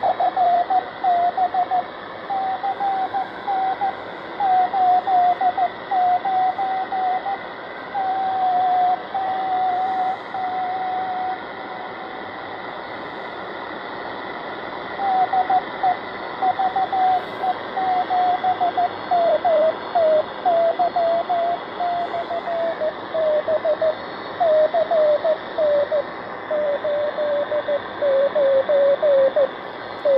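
Marc NR-52F1 Pathfinder shortwave receiver's speaker playing a keyed Morse code tone over steady band hiss: a super weak 10-metre beacon on 28.209 MHz. The tone breaks off for a few seconds midway, and its pitch drifts gradually lower in the second half.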